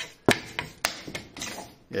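A few sharp knocks and taps on wood: two louder ones about half a second apart, then smaller ticks, as a hand sets a piece of card upright against a wooden board.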